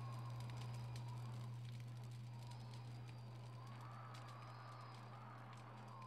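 Faint background sound: a steady low hum with faint wavering tones above it and light scattered clicks, slowly getting quieter.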